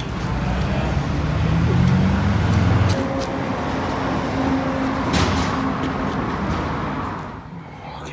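Street traffic: a motor vehicle's engine hum, loudest about two to three seconds in, then a steadier hum that fades near the end.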